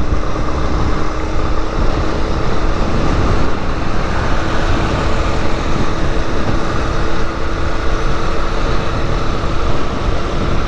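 Yamaha Lander 250's single-cylinder engine running steadily at cruising speed, heard under heavy wind rush on a helmet-mounted camera.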